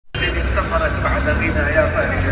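Street sound on a phone recording: people's voices talking over a steady low rumble of a vehicle engine as a van drives past.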